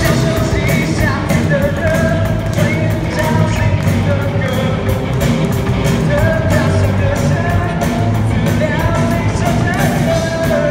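Live rock band playing loud: electric guitars, bass guitar and a drum kit keeping a steady beat, with a singer's voice over them.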